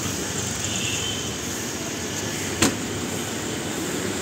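Steady street and traffic noise, with one sharp click about two and a half seconds in.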